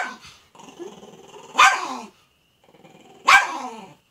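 A small dog growling, then barking twice, about a second and a half apart, with a growl trailing after each bark.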